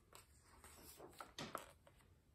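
Near silence, with a faint rustle and soft handling sounds of a picture book's page being turned about a second in.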